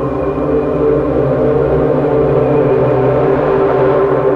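Ambient meditation music: a sustained synthesizer drone of several layered tones held steadily, with no beat.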